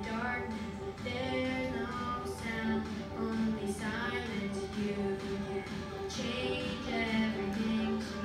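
A boy singing a song solo into a microphone over musical accompaniment, holding pitched notes that glide between phrases.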